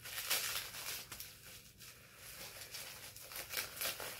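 Bubble wrap being crinkled and pulled open by hand, in irregular crackles and rustles, with a quieter spell around the middle.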